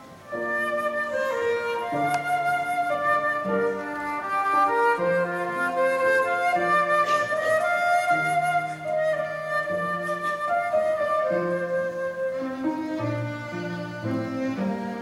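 A flute plays a melody with violins, live chamber music in a classical style. Held notes change about once a second over a lower line of sustained notes.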